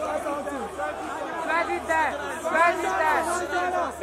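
A man's voice talking into a handheld microphone, amplified through a concert PA, with no music playing.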